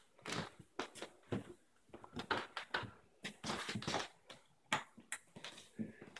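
Irregular soft taps, knocks and rustles in a small room: the handling noise of a hand-held phone being moved about while it records.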